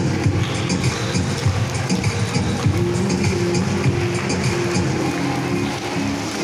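Recorded dance music with a steady beat, playing for a child's solo dance.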